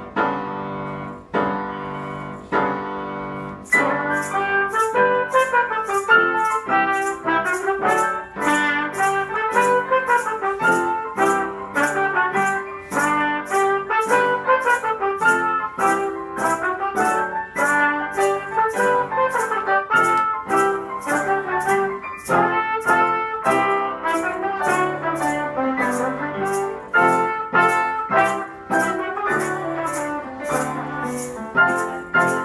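Trumpet playing a lively melody over piano chords, several hands at one piano. About four seconds in, maracas join with a steady shaken beat of about three strokes a second.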